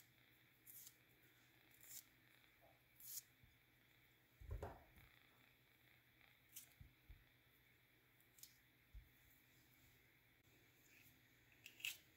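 Faint, short squelching and tearing sounds of peeled mandarin oranges being pulled apart into segments by hand, every second or so, over near silence. A soft thump comes about four and a half seconds in.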